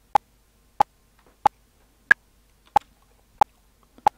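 Audacity's generated click track previewing with the 'ping' sound at 92 beats per minute: short electronic pings about every two-thirds of a second, in four-beat bars. Three lower pings are followed about two seconds in by the higher-pitched accented downbeat, then two more lower pings.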